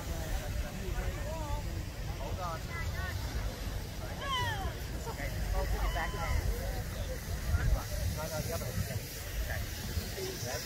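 Distant voices and calls of people on a ski slope, over a steady low rumble and hiss.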